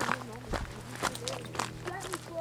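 Footsteps of hikers on a dry dirt trail, about two steps a second.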